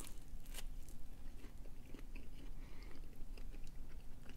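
A person chewing a bite of flatbread pizza with a tough, chewy crust: faint wet mouth sounds with a few soft clicks.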